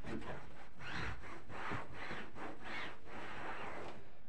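A damp cloth scrubbed back and forth over the fabric seat of a sofa, in about two rubbing strokes a second.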